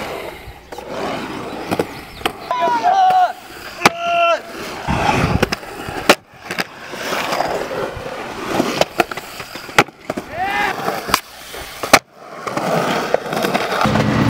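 Skateboard wheels rolling and carving across a concrete bowl, with several sharp knocks from the board and trucks striking the concrete.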